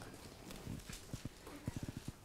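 Faint room tone with a run of soft, low ticks, coming closer together near the end.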